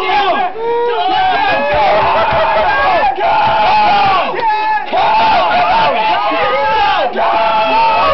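A crowd of men shouting and yelling over one another, loud and nearly continuous, cheering on an arm-wrestling bout. There are brief lulls about three and four and a half seconds in.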